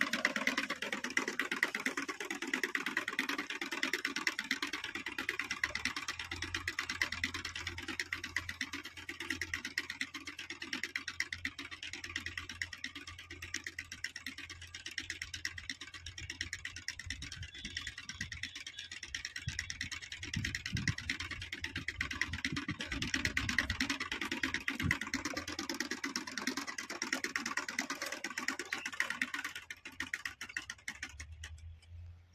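Hand-pushed single-wheel seed planter, a maize planter used here to sow groundnut, rattling and clicking steadily as it is wheeled along the ploughed furrows. A low steady engine drone joins about six seconds in.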